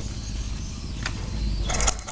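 Honda Supra 125 engine being turned over for a spark test: a low, steady rumble, with a quick run of sharp snapping clicks near the end as a big spark jumps from the bare ignition lead to the cylinder, a sign that the ignition now works with the jumper in place.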